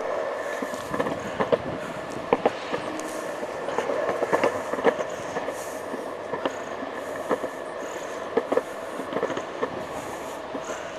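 Small hard wheels rolling along a concrete sidewalk with a steady hum. Irregular clicks and knocks come a few times a second as the wheels cross joints and cracks in the pavement.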